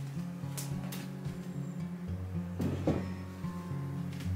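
Background music with steady held notes, with a few light knocks under it.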